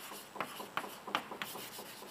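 Chalk writing on a chalkboard: a quick run of short scratches and taps as a word is written out.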